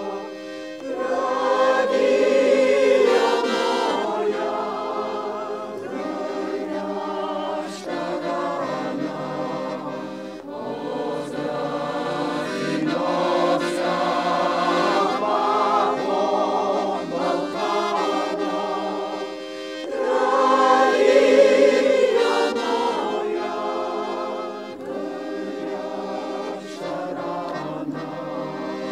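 A mixed choir of women's and men's voices singing, the phrases swelling louder about two seconds in and again about twenty seconds in, with short breaks between phrases.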